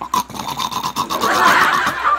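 Loud, pulsing laughter, building to its loudest about a second and a half in.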